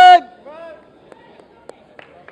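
A man's short, very loud shouted call, followed half a second later by a shorter, quieter second call: the referee's command to stop the sparring and break the fighters apart. A few faint knocks follow.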